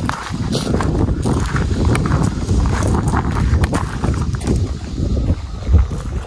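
Wind buffeting the microphone in a heavy low rumble, with repeated crunching footsteps on a gravel path.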